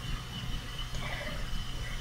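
Quiet room tone in a pause between words: a steady low electrical hum and a thin, steady high-pitched tone under faint background hiss.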